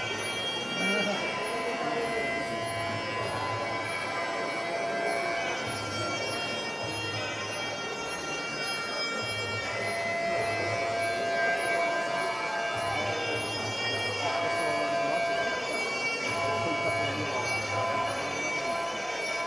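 Traditional Muay Thai sarama fight music: a Thai oboe (pi) playing a reedy melody of long held notes that shift in pitch every second or so, over a repeating drum pattern.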